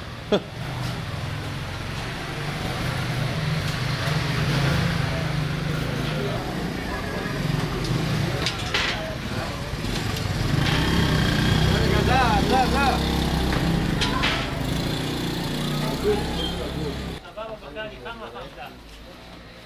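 Busy street-market ambience: a motorcycle engine running and passing close by, over the chatter of many voices.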